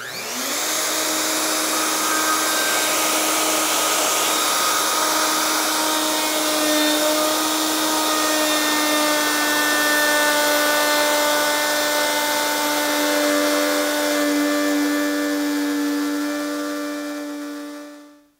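Plunge router with a dust extractor running through its hose, starting up and cutting a stopped groove in a hardwood panel. The motor whine climbs to speed in the first half second, holds steady over the extractor's hiss, and stops near the end.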